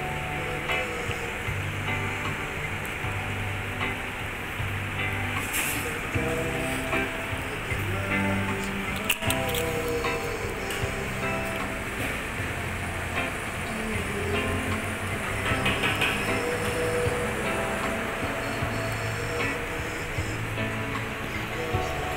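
Electronic keyboard played live: a melody over a steady, repeating bass-line accompaniment.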